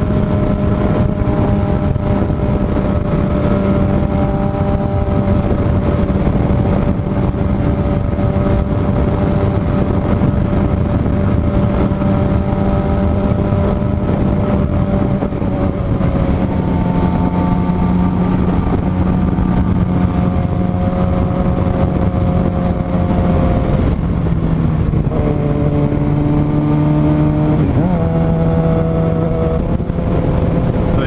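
2007 Suzuki GSX-R 750's inline-four engine under way at a steady cruise, heard over wind noise. Its pitch holds steady for about half the time, then drops in steps a few times in the second half, with a brief rise near the end.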